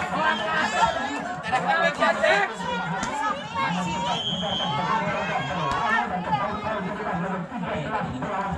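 Spectators' crowd chatter, many voices talking and calling over one another, with a short high steady tone about four seconds in.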